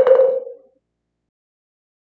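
A single struck sound with a short ringing tone that dies away within about half a second, marking a chapter break in the recitation.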